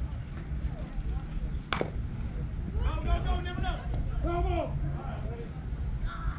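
A single sharp crack of a bat hitting a pitched baseball, about two seconds in, followed a second later by several voices shouting.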